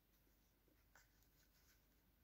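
Near silence, with faint rubbing and a few soft ticks about a second in from fingers handling the yarn and crocheted fabric.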